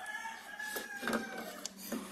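A rooster crowing faintly in the background: one drawn-out call of about a second and a half. A few light clicks come from the scooter's rear clutch and pulley assembly being handled as it is slid off its shaft.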